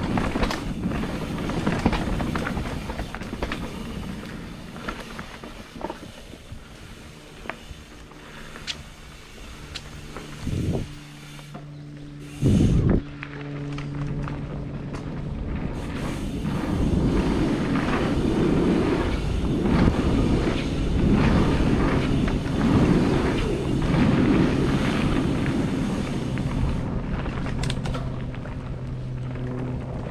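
Mountain bike riding fast down a dirt trail: tyres rolling over dirt and roots, the bike rattling, and wind on the helmet-mounted microphone, with two short low thumps about halfway through and a steady low hum in the second half.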